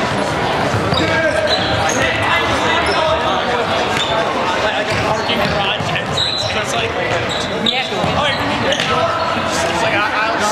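Indoor team handball play on a hardwood gym floor: players calling out over each other, unclear and echoing in the large hall, with a handball bouncing on the floor and sneakers squeaking.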